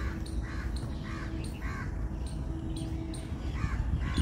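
A crow cawing: four caws in quick succession about half a second apart, then one more near the end, over a steady low rumble and faint high chirps of small birds.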